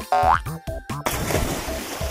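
Cartoon jump sound effect: a short rising boing, followed about a second in by a water splash, over bouncy background music.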